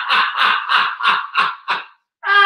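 A man laughing hard: a rapid run of ha-ha pulses, about five a second, that tail off near the end.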